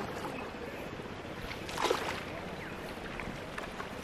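Water washing along the hull of a wooden river boat as it is poled along, a steady low wash with one brief splash about two seconds in.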